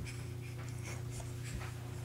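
Faint scuffing and rustling of a baby's hands, feet and clothes rubbing on carpet as he pushes himself forward on his belly, over a steady low hum.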